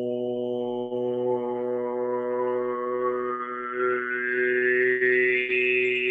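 A man's voice holding one long sung 'oh' vowel at a steady low pitch, gradually brightening as the upper overtones come in. It is a vocal imitation of a dark horn tone with an oboe tone blended in, meant to show his ideal clarinet sound.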